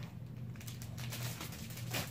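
A low steady hum with faint crinkling of cellophane wrap.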